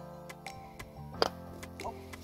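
Background music with a light ticking beat. About a second in comes one sharp strike of a golf club blasting a ball out of a sand bunker, the loudest sound.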